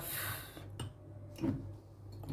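Faint handling noises as a hand reaches for a small glass jar on a wooden table: a soft rustle at the start, then a couple of light knocks, over a steady low hum.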